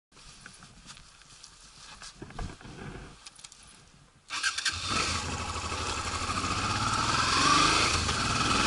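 Faint rustling and a few light knocks, then about four seconds in a Honda Transalp's engine comes in loud with wind rush as the motorcycle pulls away and accelerates, its pitch rising.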